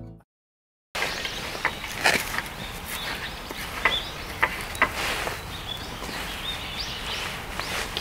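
After a moment of silence, outdoor background with scattered light clicks and taps as small items are handled on a camp table and a wooden cutting board.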